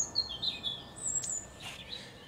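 Small birds chirping: a quick run of high chirps sliding downward in the first second, then a single higher note a little after a second in.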